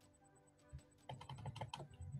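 Faint, quick clicking of keys on a computer keyboard, beginning a little under a second in.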